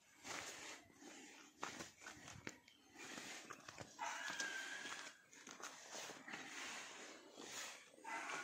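Faint footsteps on a dirt and gravel path, coming as short, irregular steps over a low outdoor background.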